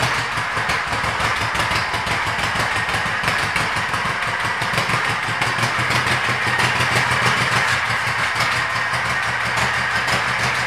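2007 Honda Shadow Spirit's V-twin engine idling steadily.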